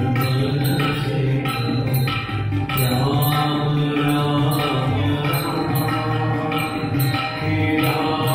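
A group singing a Hindu devotional bhajan in chant style, with a steady rhythmic beat of about two strokes a second.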